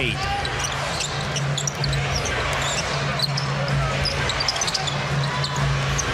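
Live basketball game sound on a hardwood court: a ball being dribbled, many short high sneaker squeaks, and a steady arena crowd murmur underneath.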